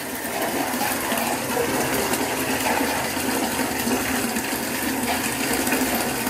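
Bath tap running steadily into a filling bathtub: an even gush of water.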